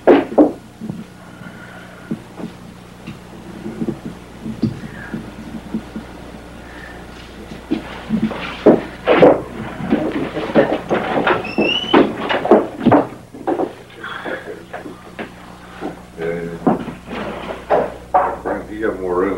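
Scattered knocks and clatter, as of parts being handled, over a steady low hum. The first seven seconds or so are quieter; the knocks come thickly after that, with a short high squeak near the middle.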